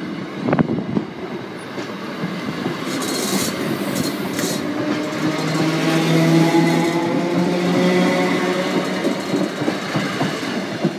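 Class 321 electric multiple unit passing close by over a level crossing, its wheels clattering over the rail joints, with a sharp knock about half a second in. It grows louder as the carriages go past, with a steady hum in the later seconds.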